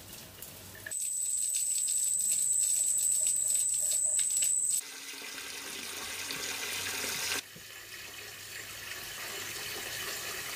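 Water pouring from a hose pipe and splashing into the shallow water of a filling pool, in short cuts of differing loudness. From about a second in until about five seconds, a high, steady whine sits over the splashing.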